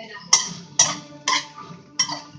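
A spatula scraping and knocking against a kadhai while stir-frying capsicum and green chillies, in sharp strokes about twice a second.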